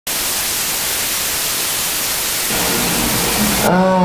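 Loud, steady television static hiss that cuts off abruptly near the end, as a voice comes in.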